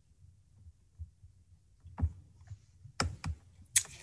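A handful of short computer clicks, mouse and keyboard, picked up by a video-call microphone while screen sharing is being started. Faint at first, louder from about halfway through, over a faint low hum.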